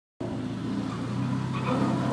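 A Ford Mustang 5.0's V8 engine held at revs as the car spins a donut, heard at a distance from inside another car and growing slightly louder.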